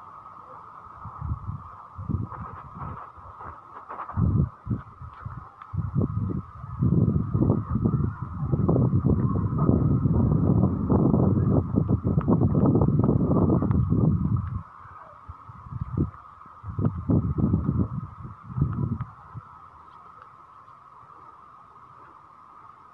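Wind buffeting a phone microphone in irregular gusts, with a long strong gust in the middle that dies down near the end, over a steady high-pitched drone.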